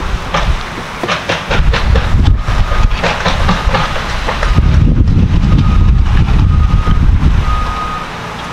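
Construction machinery running in the background as a loud, uneven low rumble mixed with wind on the microphone, with scattered knocks. A reversing alarm beeps repeatedly in the second half.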